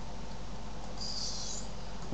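Steady background hiss with a faint electrical hum from the voice-over recording setup, and a brief soft high hiss about a second in.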